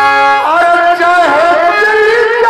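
Live Bhojpuri folk-theatre music: a held chord for about half a second, then a bending, wavering melody line over it, with no drumming.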